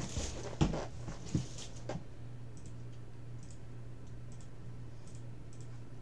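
Typing on a computer keyboard: a few sharper keystrokes in the first two seconds, then faint, scattered clicks, over a steady low hum.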